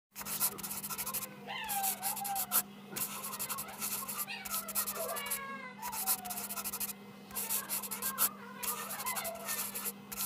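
Graphite mechanical pencil scratching on paper in short sketching strokes, each about half a second to a second long, with brief pauses between them. Several drawn-out calls that fall in pitch sound over the strokes, and a steady low hum runs underneath.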